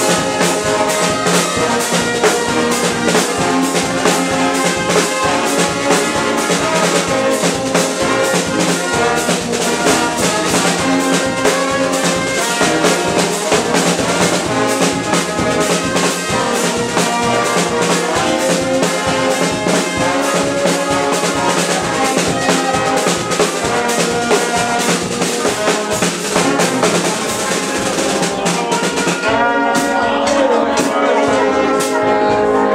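Dweilorkest brass band playing live: trombones, trumpets, euphoniums and a sousaphone over snare and bass drum, with a steady beat. The drums stop just before the end while the horns play on.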